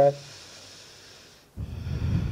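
A person taking a deep breath: a long, quiet inhale, then about one and a half seconds in a louder exhale that blows onto the microphone with a rumble.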